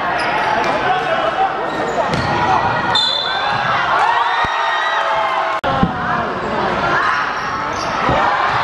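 Basketball dribbled on a hardwood gym floor, with players' shouts and voices echoing in a large sports hall.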